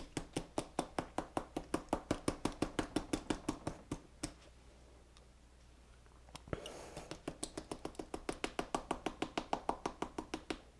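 A fly-tying hair stacker tapped rapidly and evenly against a knee, about five taps a second, to even up the tips of deer hair. The tapping stops for about two seconds midway, then starts again.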